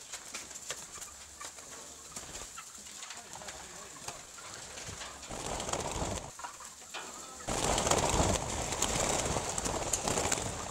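Birds calling with low, cooing calls over a murmur of people's voices; the murmur grows louder about three quarters of the way in.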